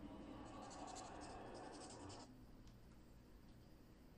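Faint soundtrack from a DTS:X demo trailer played through a surround speaker system, with a quick high crackle. It cuts off suddenly about two seconds in as the trailer ends, leaving near silence.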